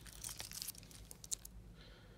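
Faint crackles and clicks of a stainless steel bracelet watch, its bracelet still wrapped in protective plastic film, being picked up and handled, busiest in the first second and a half.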